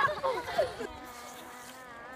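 Voices trailing off in the first second, then a faint steady buzzing hum of several fixed pitches.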